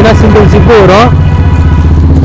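A motor vehicle engine running steadily, heard as a low drone, with a man's voice over it during the first second.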